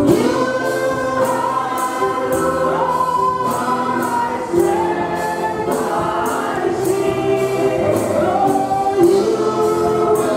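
A woman singing a gospel song through a microphone and PA, with other voices singing along and a steady percussion beat about twice a second.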